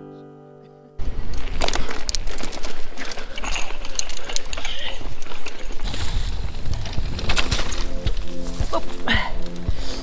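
A held music chord fades out over the first second. Then comes the loud wind and rattle of a mountain bike riding over a rough dirt trail, full of sharp knocks. Background music comes back in under it about six seconds in.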